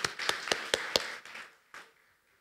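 A small audience clapping briefly, with a few sharp claps standing out over lighter clapping. It dies away about a second and a half in, and one last clap comes near the end.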